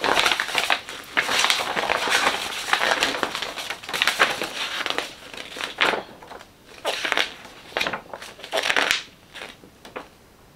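Paper instruction manual being leafed through and handled, its pages rustling and crinkling. The rustling runs on steadily for about five seconds, then comes in a few separate short rustles.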